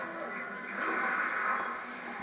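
Faint background television sound: music with some voice.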